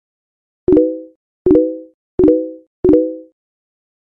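Four identical pop sound effects, evenly spaced about 0.7 s apart, each a sharp click with a short ringing tone that dies away quickly. These are editing sound effects marking on-screen pop-up graphics.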